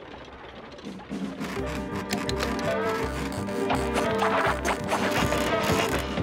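Cartoon underscore music with a steady low beat, coming in about a second in, mixed with clicking sound effects.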